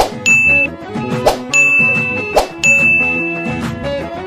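Three bright ding chimes from a subscribe-button animation, each of the last two just after a sharp click, over background music.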